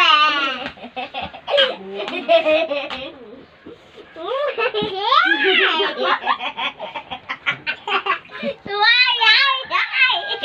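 Young children laughing hard in high-pitched voices, with swooping squeals and a quick run of giggles in the middle, in a small room.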